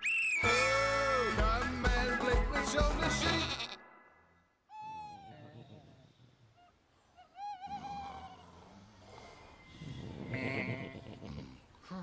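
The last bars of a cartoon theme tune, which stops about four seconds in. After a brief silence come two short, wavering sheep bleats about two seconds apart, then only faint sounds.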